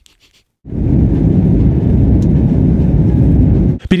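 Loud, steady low rumbling noise with no voice in it, starting suddenly about half a second in and cutting off just before speech resumes.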